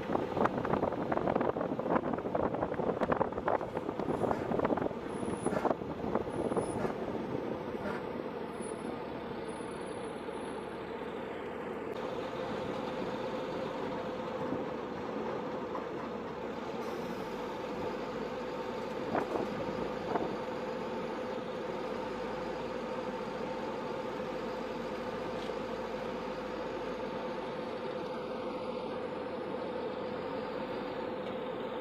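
Armored military vehicle's engine running as it drives, heard from on top of the hull: a steady drone with a constant hum, with rattling and clatter over the first several seconds and a few faint high squeaks.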